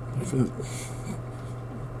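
Quiet, murmured voice sounds and a brief breathy hiss in the first second, over a steady low hum.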